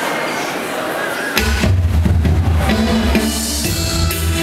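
Noise from a crowd in a hall, then about a second and a half in a dub reggae track suddenly drops in over the PA, with heavy bass and a drum kit.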